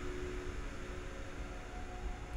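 Room tone: a steady, low hiss with a faint hum.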